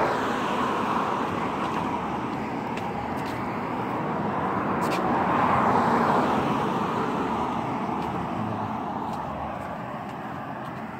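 Road traffic noise, a vehicle passing close by: a steady rush of tyres and engine that swells to its loudest about six seconds in and then fades away.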